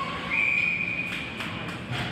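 Ice hockey referee's whistle blown once, a single steady high note held for about a second and a half, calling a stoppage in play.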